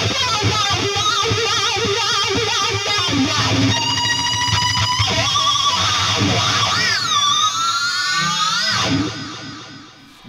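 Distorted lead on an ESP LTD MH-401FR electric guitar with effects: sustained high notes with wide vibrato, then a quickly repeated high note about four seconds in. Near the end a high squealing note dips and is pulled slowly up in pitch before ringing out and fading.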